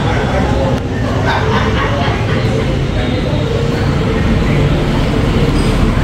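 Street traffic ambience: a steady rumble of motor vehicles with indistinct voices mixed in.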